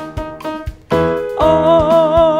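Keyboard accompaniment with a light beat, then about a second and a half in a woman's voice enters on a sustained "o" sung with an even vibrato, the pitch wavering about three times a second. It is a controlled, rhythmic vibrato exercise.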